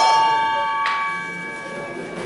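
A bell struck twice, about a second apart, its ring slowly fading. It is typical of the bell that starts a sanda round.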